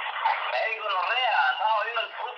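A person's voice speaking in a voicemail message played back through a mobile phone's loudspeaker, sounding thin, with no low end.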